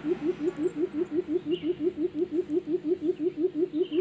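A decoy quail calling steadily: a fast, regular run of short low rising notes, about eight a second. It is the lure bird's call, used to draw wild quail to the snare.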